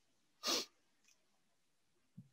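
A person's single short, sharp breath noise through the nose or mouth, about half a second in, followed by near silence.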